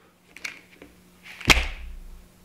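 A single sharp crack about one and a half seconds in, followed by a brief low rumble, after a few faint clicks, over a faint steady hum.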